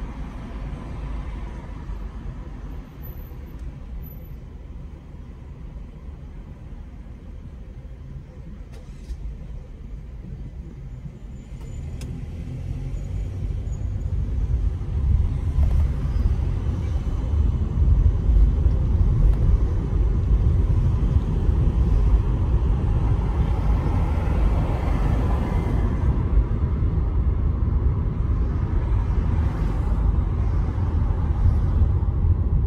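A car's low engine and road rumble: a quiet hum while it waits at a red light, then from about twelve seconds in the rumble grows steadily louder as the car pulls away and gathers speed.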